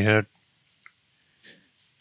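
Computer keyboard keystrokes: four short, faint clicks in two pairs, as letters are deleted while editing code.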